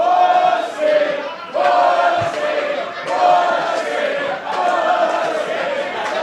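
Wrestling crowd chanting in unison: a rhythmic two-note chant, a held higher note then a lower one, repeating about every second and a half.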